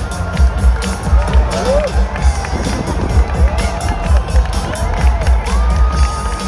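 Music over a large concert PA with a heavy, regular low drum beat, heard from inside a big outdoor crowd that cheers, with several rising-and-falling whoops through it.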